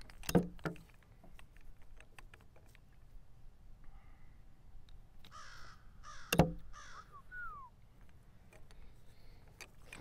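Sharp taps of chess pieces set down and a chess clock pressed during a blitz game, with the loudest tap about six seconds in. A bird calls a few harsh times in the background between about five and eight seconds, the last call sliding down in pitch.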